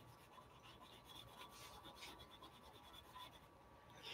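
Faint scratching and rubbing of a cotton swab blending baby oil into black oil pastel on paper, barely above silence.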